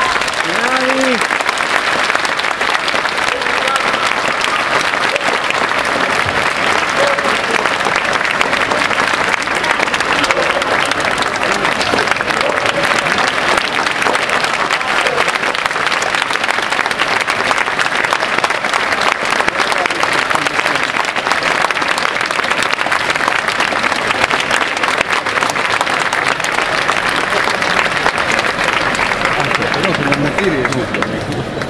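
Audience applauding: a long, steady round of clapping that breaks out just as the orchestra stops, with a few voices heard among it.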